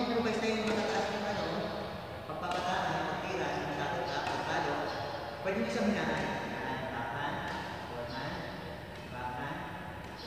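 Indistinct talking with no words picked out.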